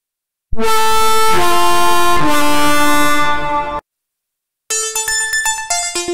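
Access Virus C synthesizer, emulated in software, playing a bright lead patch: held notes stepping down in pitch twice, cut off sharply after about three seconds. After a short gap an arpeggiator patch starts, a fast run of short, rapidly changing notes.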